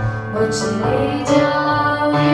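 A woman sings a Hindi worship song into a microphone, over sustained chords and bass notes from an electronic keyboard.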